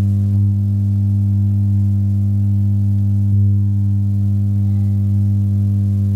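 A loud, steady low drone: one deep pitch with a row of overtones, held unchanged throughout, with a faint click a little past halfway.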